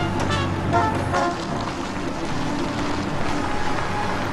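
Engines of a passing car and army truck driving by, mixed with background music; the low engine drone drops away about a second in.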